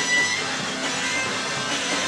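Live electro space rock band playing, with electric guitar strumming prominent in the mix.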